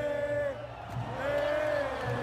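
Stadium supporters' chant on two long held notes, the first fading about half a second in and the second rising in about a second in, over a steady crowd rumble.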